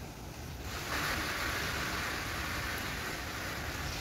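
Garden hose spraying water onto grass: a steady hiss of spray that starts about a second in.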